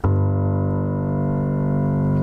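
A low G octave struck once on the piano with the left hand at the start, then held and ringing steadily. It is the last note of a three-note octave bass pattern, D, C, G.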